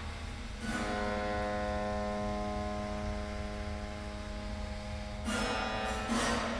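Strings on the bare frame of a dismantled piano set ringing by a noisy attack about a second in, sustaining as a chord of several steady tones. A second noisy attack comes near the end.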